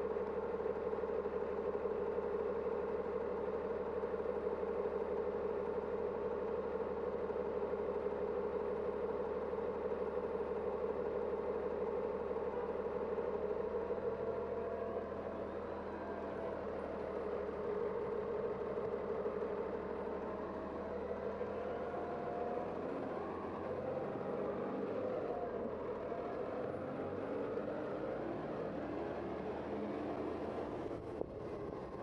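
City bus engine idling with a steady hum close by. In the second half the bus pulls away, and its drive sound rises and falls in pitch as it accelerates.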